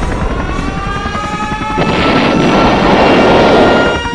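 Aircraft engine drone with a slowly rising whine, then a sudden explosion about two seconds in, followed by a loud, sustained rumble from the bombing.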